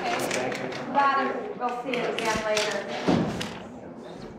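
Indistinct voices of several people talking, with two dull thumps about two and a half and three seconds in, as a heavy quilt is handled over a wooden desk.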